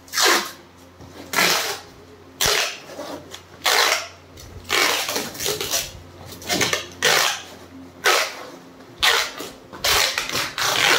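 Brown packing tape being pulled off the roll and pressed onto a cardboard box, a short rasping rip about once a second, around nine strips in all.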